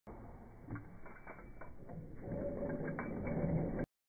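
Metal clicks and rattles from a rope drop-test rig. About halfway in, a steady mechanical hum builds in loudness, then cuts off suddenly.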